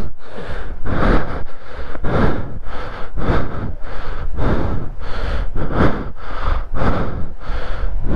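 A person breathing hard and fast close to the microphone, about one breath every half second or so, with exertion. A steady low rumble runs underneath.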